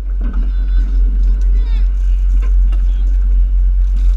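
Steady low rumble of a tour boat under way, with children's distant shouts and a short high falling squeal about a second and a half in.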